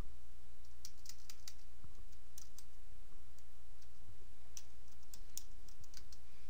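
Typing on a computer keyboard: scattered, irregular key clicks as a name is typed and corrected, over a steady low hum.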